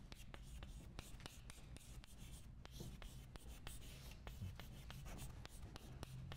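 Chalk writing on a blackboard: a faint, quick run of taps and scrapes as a word is written out stroke by stroke.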